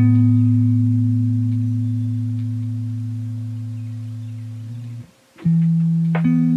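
Lofi hip hop music: a deep held bass note and chord that fade slowly, with a few light plucked guitar notes. The notes break off about five seconds in, and a new chord comes in.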